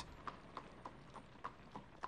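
A horse's hooves clip-clopping faintly on cobblestones as it pulls a carriage, a steady run of about three or four hoof strikes a second.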